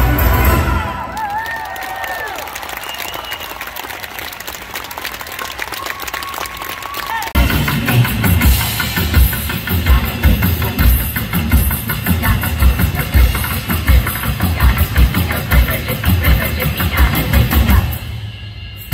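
Live band music on a stage sound system: a loud number cuts off about a second in, leaving a quieter stretch of crowd noise and scattered applause. About seven seconds in, a drum kit comes in with a heavy, steady beat and the band plays on loudly.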